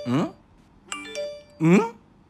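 Looped novelty sound clip: a few quick chime notes stepping upward, like a doorbell, followed by a short questioning "hmm?" rising in pitch, heard twice about a second and a half apart.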